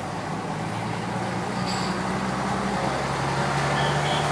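A heavy diesel lorry's engine running as it drives slowly past close by, growing louder. The engine note steps down slightly about three seconds in.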